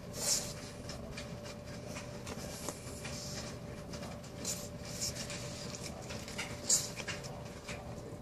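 A pug sniffing and snuffling at a beetle on the carpet in a few short, breathy bursts, the loudest about two-thirds of the way in.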